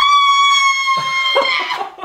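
A woman's long, high-pitched whoop ('woooo') of celebration. It is held for nearly two seconds and sags slightly in pitch before fading, with other voices joining faintly underneath partway through.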